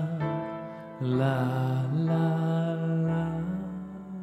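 A man singing long held notes over chords on a digital piano. A new chord is struck about a second in, and the sound fades toward the end.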